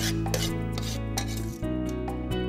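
A metal spoon scraping and clinking against the inside of a cooking pot as cooked vegetables are scooped out, a few strokes mostly in the first second, over steady background music.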